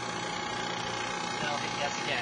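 The vacuum pump of a URG particulate air sampler runs steadily, with a thin constant whine over its hum, pulling the system down to vacuum for a leak check.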